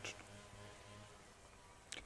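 Faint buzzing of a flying insect, barely above near silence.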